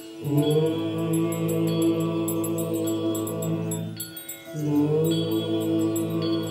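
Hindu devotional mantra chanting in long held notes, breaking off briefly about four seconds in before the next phrase. Light, regular high ticks of percussion sound over it.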